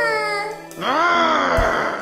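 A high, wailing cry that swells and then falls away in pitch, over background music.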